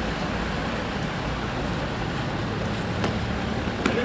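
Steady outdoor street noise with a low rumble of road traffic, and a small click near the end.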